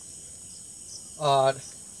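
Crickets chirping steadily at night, a faint continuous high trill.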